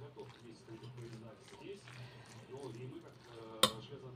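A metal spoon stirring minced meat mixed with grated zucchini in an enamel bowl, soft and faint. About three and a half seconds in, the spoon gives a single sharp clink against the bowl.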